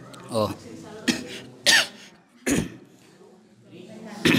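A man coughing and clearing his throat: three short coughs within about a second and a half, just after a brief spoken "oh".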